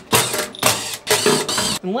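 A cordless power screwdriver whirring in four short runs as it backs out the screws holding the lid of a 12 V LiFePO4 battery case. Its motor whine rises and falls with each run.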